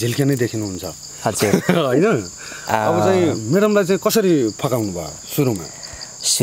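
Steady high-pitched insect chirring, unbroken behind continuous speech.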